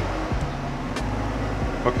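Steady low hum of a running generator, with a single short click about a second in.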